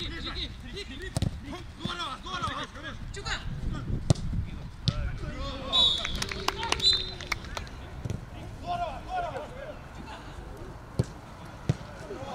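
Footballers calling out across an open pitch, with several sharp thuds of the ball being kicked.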